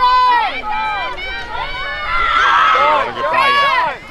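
Several high girls' voices shouting and calling out at once across a lacrosse field, overlapping, loudest and densest from about two seconds in.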